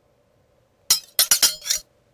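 A quick run of about five sharp, bright clinks, like glass striking glass, lasting about a second.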